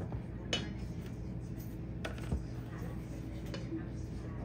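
Light kitchen handling sounds: heavy cream poured from a carton into a glass measuring cup, and a spatula stirring in a metal mixing bowl, with two short knocks about half a second and two seconds in, over a steady low hum.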